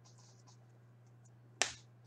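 Hockey trading cards being shuffled by hand: faint slides of card against card, then one sharp snap about a second and a half in. A steady low hum runs underneath.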